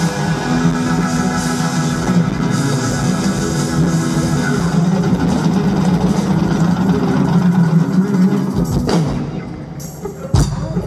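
Live band playing an instrumental passage, with strummed acoustic guitar and drums under sustained tones; the music drops away shortly before the end, with one last hit.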